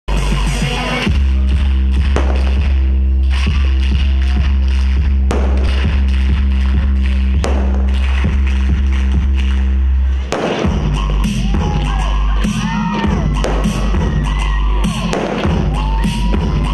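Loud recorded dance music with a heavy sustained bass and sharp percussive hits, changing about ten seconds in to a new section with gliding, vocal-like lines over the beat.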